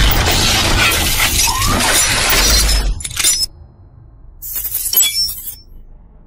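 Intro sound effect of glass shattering over music: a loud crashing rush that cuts off about three and a half seconds in, then a shorter burst of high tinkling about a second later.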